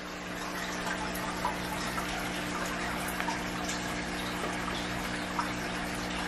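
Aquarium water bubbling and trickling steadily from the tank's filter and air bubbles, over a low steady hum from the equipment.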